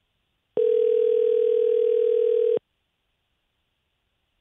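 Telephone ringback tone on an outgoing call: one steady ring about two seconds long, starting about half a second in and cutting off sharply. It is the sign that the called phone is ringing and has not yet been answered.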